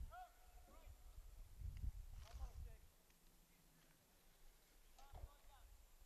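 Near silence outdoors, with a few faint, distant shouts from players on the field.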